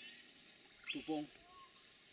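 A bird's short high whistle that falls in pitch, about one and a half seconds in, heard faintly with a brief snatch of a man's voice just before it.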